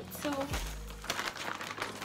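Clear plastic bag crinkling and rustling as it is handled.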